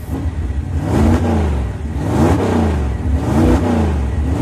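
A motor engine revving up and down about once a second over a steady low drone.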